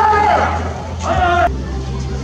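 Two long shouted calls from a man's voice in a bullpen, the first at the start and the second about a second in, over a low steady hum.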